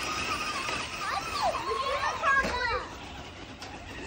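Children's high-pitched voices calling out and squealing, loudest in the middle, over steady background noise.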